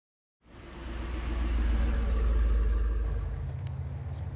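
A low rumble fades in about half a second in, builds to its loudest around the middle and eases off near the end, its pitch stepping up shortly after three seconds.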